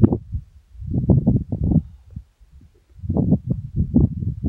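Wind buffeting the microphone: loud, low rumbling gusts in irregular surges, easing off in the middle before picking up again near the end.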